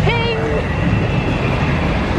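Wicker Man wooden roller coaster's train rumbling along its wooden track, with a short shout from a voice near the start.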